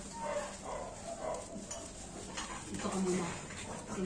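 A French bulldog vocalising quietly during its bath, under low background talking.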